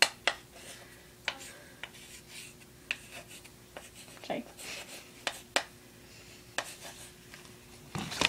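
A marker scratching on paper in short strokes as someone writes, with scattered light taps and clicks, over a faint steady hum.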